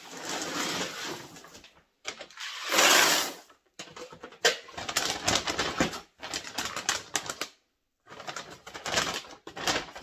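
Dry pinto beans rattling as they are scooped and poured into a five-gallon Mylar bag set in a plastic bucket, in several bursts with short pauses between, the loudest about three seconds in. The foil bag rustles as it is handled.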